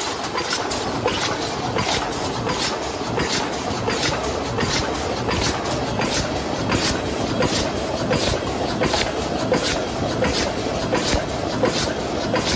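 DEBAO-1250C high-speed paper cup forming machine running: a steady mechanical clatter with sharp, evenly spaced clicks, about two or three a second.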